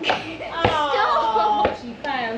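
A voice calling out with a drawn-out, falling exclamation, with two sharp knocks from a rubber ball thrown at a basketball hoop, about half a second in and just before the end.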